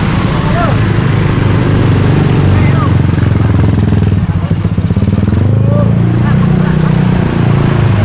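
Motorcycle and scooter engines running close by as several bikes pass, each carrying two riders up a steep uphill bend, with voices in the background.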